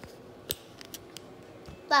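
A few light, sharp clicks, the loudest about half a second in, from a handheld phone being handled while filming; a woman's voice starts at the very end.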